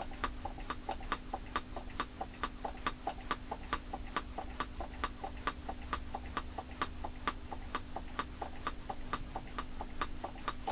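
Hand-squeezed brake bleed vacuum pump being worked steadily to draw a vacuum on a jar, its metal levers clicking about three times a second over a faint steady hum.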